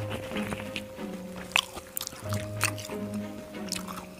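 Soft background music with long held notes, over close-miked chewing of fried battered squid with sambal: wet, squishy mouth sounds and scattered sharp clicks.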